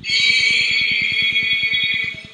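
An imam's Quran recitation during prayer through the mosque's sound system, holding one long steady note that fades near the end. A rapid, even low buzz runs underneath.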